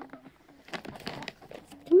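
Plastic pouch of dried black soldier fly larvae crinkling as a hand dips in and scatters a handful, a run of light irregular crackles and clicks starting about half a second in.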